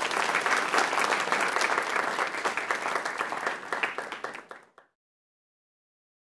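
Applause from an audience, many hands clapping densely together; it starts abruptly, thins out over the last second and stops just before five seconds in.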